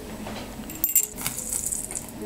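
A short cluster of light metallic clinks about a second in, over faint background music with steady held notes.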